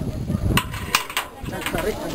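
Voices talking, with a few sharp clacks between about half a second and a second in, from a metal fork and stones as a pachamanca earth oven is dug open and the food lifted out.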